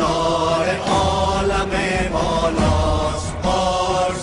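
Persian song with chant-like singing: a voice holding short sung phrases over accompaniment, with low beats underneath.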